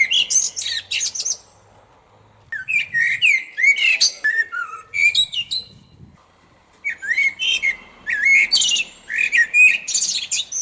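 A songbird singing in three long runs of fast, high chirps and trills, with short pauses between them.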